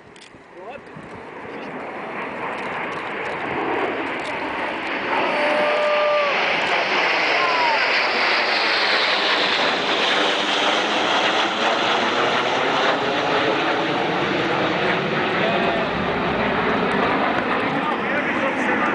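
Jet roar of four Dassault Mirage 2000C fighters, each with a single SNECMA M53 turbofan, passing overhead in formation. It builds over the first several seconds to a loud, steady roar with a slowly sweeping, phasing sound.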